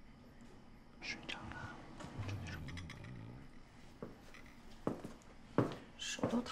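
A quick "shh" hush about a second in, then soft whispered speech.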